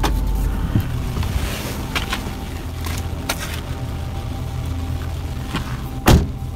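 Car engine idling, heard from inside the cabin through a phone's microphone as a steady low hum, with a few faint clicks.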